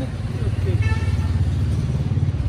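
A motor vehicle engine running close by, a steady low rumble with a fast even pulse, with brief voices faintly over it.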